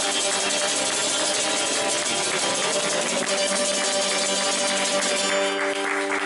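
Acoustic guitar strummed hard and fast, a dense, steady wall of strummed chord.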